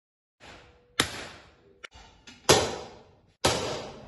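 Three hammer blows on a hand-made metal gong plate, each a sharp strike followed by a metallic ring that fades over about a second, as the gong is hammered into tune.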